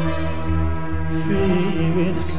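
Live ensemble music on keyboard, double bass and oud: low bass notes pulse steadily under sustained, gently bending melody lines.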